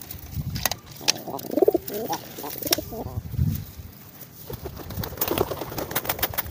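Domestic racing pigeons cooing, low wavering calls strongest from about one to three seconds in, with a few sharp clicks scattered through.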